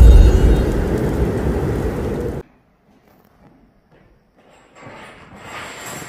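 Cinematic logo-intro sound effects and music: a loud, deep, low-heavy swell, loudest at the start, that fades and cuts off abruptly about two and a half seconds in. After that it goes nearly silent, with faint background noise near the end.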